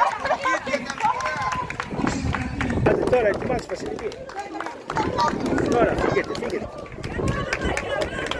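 People talking at close range, with footsteps on the road surface.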